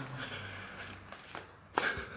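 A single short, sharp knock about three-quarters of the way through, over faint background noise.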